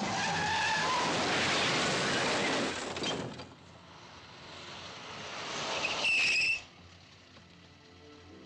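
A car driving fast with its tyres squealing for about three seconds, then fading. About six seconds in comes a short, loud tyre screech lasting about half a second.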